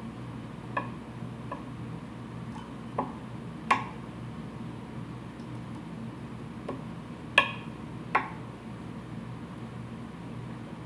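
A handful of light, sharp clicks and ticks from handling fine wire ribbing and tools at a fly-tying vise, the sharpest about three and a half and seven and a half seconds in, over a faint steady hum.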